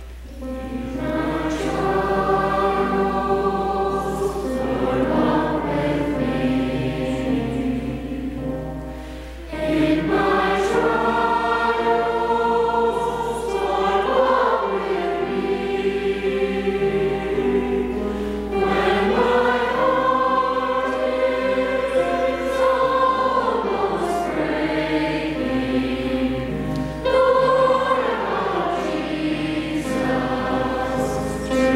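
A church congregation singing a hymn together, in long phrases of about nine seconds with brief breaks between them.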